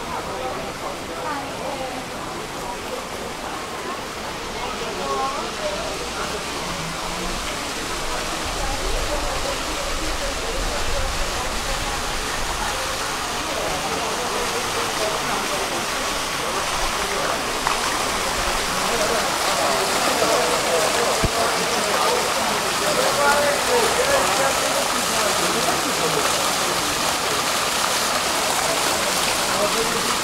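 Water from a stone fountain splashing over its rocks into the basin, a steady rush that grows gradually louder, with people's voices chattering around it.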